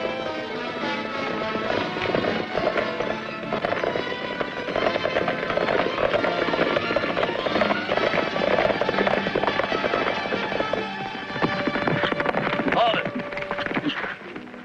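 Orchestral western film score, with the hoofbeats of several galloping horses underneath.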